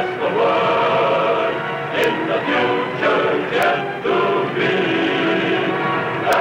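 Closing theme music with a choir singing sustained chords.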